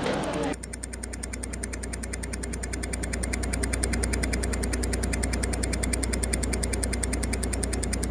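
A steady low hum with a rapid, even ticking over it, like a small machine running, growing slowly louder.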